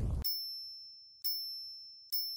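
Logo-animation sound effect: a noisy whoosh cuts off a moment in. Two short, high-pitched electronic dings follow about a second apart, each ringing out and fading.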